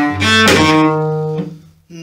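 Cello being bowed, then a sudden snap about half a second in, typical of a cello string breaking. A note rings on for about a second, then fades out.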